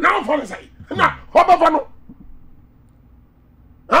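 A man's voice in short, animated exclamations for the first two seconds, then a pause of about two seconds with only a faint steady studio hum, and a voice again near the end.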